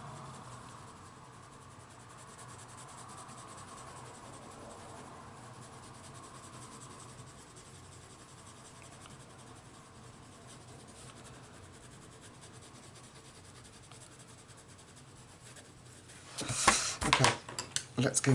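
Prismacolor coloured pencil rubbing softly on paper as it blends, a faint steady scratching. Near the end, a few louder sharp clicks and knocks as pencils are handled.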